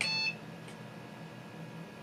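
A single short electronic beep from the PC's motherboard speaker, about a third of a second long, then only the steady low hum of the running computer.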